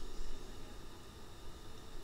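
Pause between spoken lines: a faint steady hiss with a low hum underneath, the recording's background noise.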